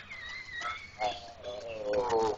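A woman's long vocal yawn: a high squeaky pitch for about the first second, then a lower drawn-out tone that slides slowly downward.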